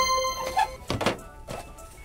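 Background music with a thunk about a second in and a lighter knock after it, as a plastic blister-packed die-cast car set is picked up off a metal store shelf.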